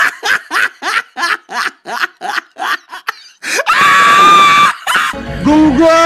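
Laughter in short, evenly spaced bursts, about three or four a second, then a loud held scream about four seconds in. Music with a bass line starts near the end.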